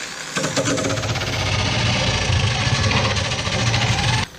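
A cordless drill spins a 50-grit grinding disc against cured epoxy, giving a steady motor whir with the rasp of the coarse abrasive. The disc is grinding down lumps in an epoxy caulking bead along the hull's chine.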